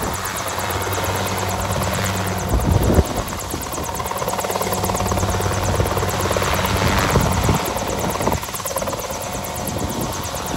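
CH-7 Kompress ultralight helicopter hovering low and then lifting away, its engine and main rotor running steadily with a fast, even blade beat. Two brief gusts of low rumble come through, the loudest about three seconds in.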